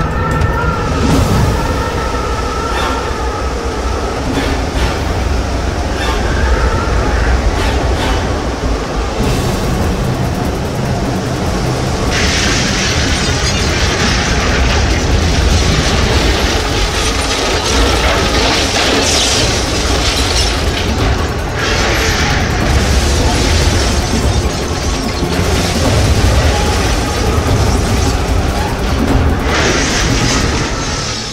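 Sound-designed roar of a tornado: a loud, continuous wind roar with a deep rumble, swelling with surges of high hissing wind from about twelve seconds in, under a dramatic music score.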